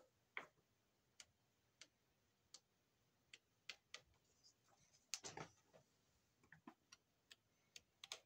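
Faint, irregular light clicks and taps, a few each second, with a short cluster of rustling clicks about five seconds in.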